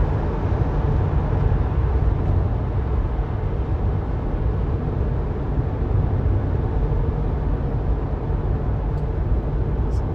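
Steady low tyre and road noise heard inside a Tesla's cabin at freeway speed, around 60 mph.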